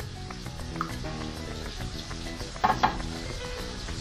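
Onion and leeks frying in oil in pans on the stove: a steady sizzle, under faint background music.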